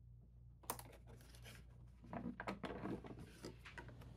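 Faint irregular clicks, scrapes and rustles, beginning under a second in, as a die-cut cardboard door of a Fisher-Price Little People advent calendar is pried open and a small plastic sheep figure is taken out from behind it.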